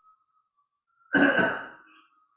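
A person coughs once, a short sharp cough about a second in that quickly dies away.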